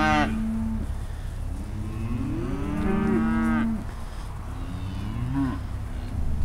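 Beef cattle mooing in long, drawn-out calls: one trailing off in the first second, a longer one from about two seconds in, and a fainter one near the end, over a steady low rumble.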